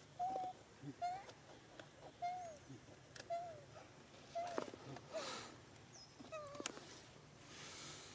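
Baby macaque giving a string of short, high coo calls about once a second, each flattening then dropping in pitch at the end, with a faint hiss twice in the background.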